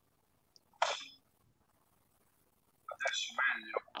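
A person's voice: a short breathy burst about a second in, then a brief stretch of speech near the end.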